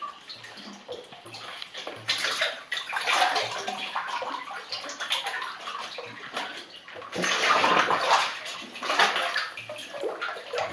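Water sloshing and splashing around a cave diver moving in a sump pool as he lowers himself under the surface, growing louder in the last few seconds.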